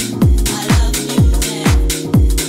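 Deep house music from a DJ mix: a steady four-on-the-floor kick drum, about two beats a second, under held chords and cymbal hits between the beats.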